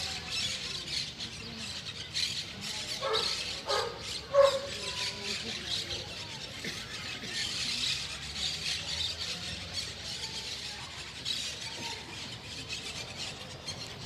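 Small birds chirping in the trees over a silent crowd outdoors, with a few short, louder squawking calls about three to four and a half seconds in.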